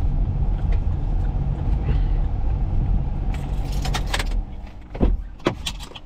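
Car engine running, heard from inside the cabin, then switched off about four seconds in. Keys jangle in the ignition as it is turned off, and a thump and a few clicks follow near the end.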